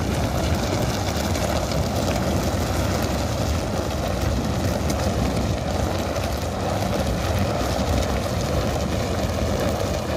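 Large rubber tyre dragged by a pair of Ongole bulls over a dirt road, giving a steady rough scraping rumble.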